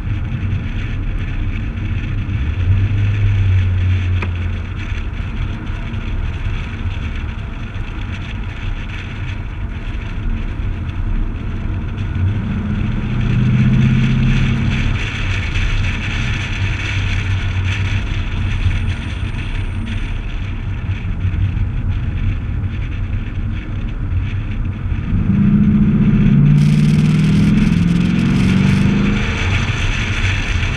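C6 Corvette's V8 running on the move, with wind and road rush on a hood-mounted camera. The engine note climbs as the car accelerates, briefly about halfway through and louder and longer near the end.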